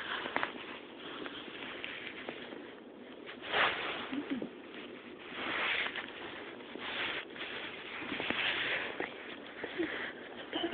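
Rustling and scuffing on soft couch fabric in irregular bursts, the loudest about three and a half seconds in, as the phone and a hand move over the cloth among scurrying roborovski hamsters.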